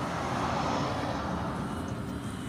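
Steady engine drone with outdoor background noise.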